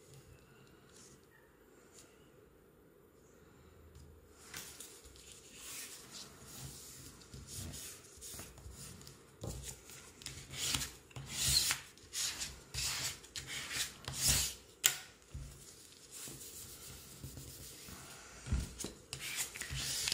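A small flat handheld scraper rubbed back and forth over paper in repeated strokes, burnishing a freshly glued paper pocket flat onto a page. The strokes begin about four seconds in and are loudest in the middle.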